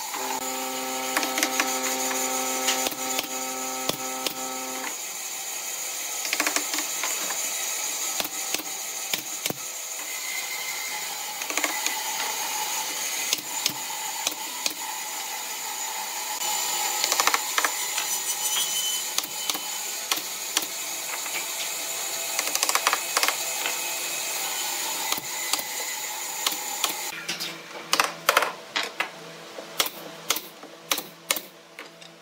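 Workshop handling of pine chair slats: scattered knocks and clicks of wood being set in place, with a steady hum for the first few seconds. Near the end a pneumatic nail gun fires a quick series of sharp shots into the backrest slats, the loudest sounds here.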